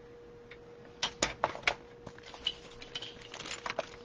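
A plastic paper trimmer being set down on a cutting mat and cardstock handled on it: a cluster of sharp clicks and knocks about a second in, then scattered light taps.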